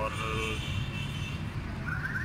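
A man's voice trailing off at the start, over a steady low background rumble.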